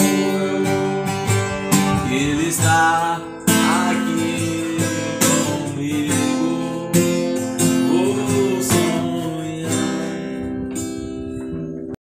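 Acoustic guitar strummed in a steady rhythm, with a man singing along. Near the end the strumming thins out and the chord rings on, fading.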